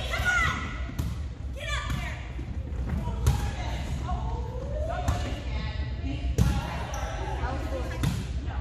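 Volleyball being struck by players' hands and forearms during a rally: about five sharp hits a second or two apart, carrying in a large gym, with players' voices calling out between them.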